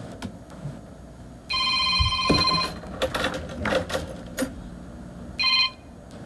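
An electronic ringing tone sounds for about a second near the middle, then once more briefly near the end.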